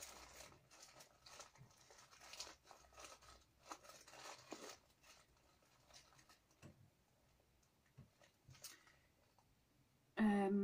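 Faint rustling and crinkling of paper seed packets being handled and sorted. It is busiest in the first five seconds, with a few scattered soft rustles after that.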